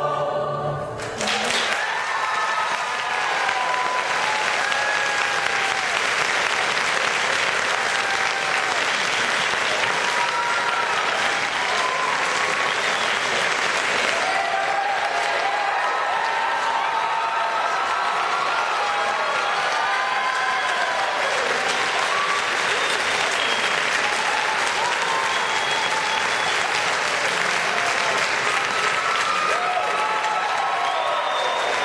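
A choir's closing chord ends about a second in. Loud, sustained audience applause follows, with many cheers and whoops over it.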